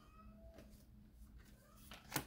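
Near silence, with two faint, short cat meows in the background.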